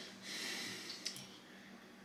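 A faint breath lasting under a second, followed by a single small click about a second in, over a faint steady low hum.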